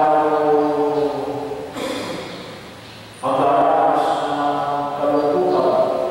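A man's voice chanting a liturgical prayer into a microphone over the church sound system, in long held notes. The voice dips about three seconds in, then comes back on a new note.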